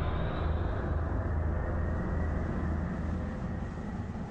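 A deep, noisy rumble with no tune, slowly fading: an ominous sound effect in an animated cartoon.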